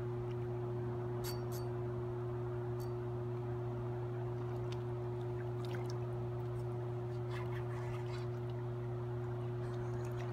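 A steady low electrical hum holds throughout over an even rushing noise, with a few faint, scattered clicks.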